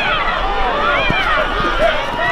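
Crowd of spectators yelling as a football play unfolds, many voices overlapping at a steady, loud level.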